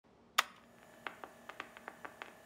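A cassette deck's play key pressed down with one sharp mechanical click, followed by faint, irregular ticks over a low steady hum as the tape starts running.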